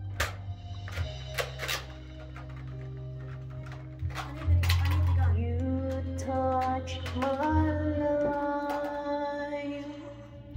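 Karaoke backing track with a heavy bass line, and a woman singing along into a handheld microphone from about four seconds in. A few sharp knocks in the first two seconds.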